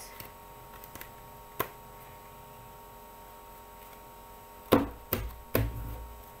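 A deck of Bicycle playing cards being cut by hand: one sharp click about a second and a half in, then three louder clicks with soft thumps near the end, over a steady faint hum.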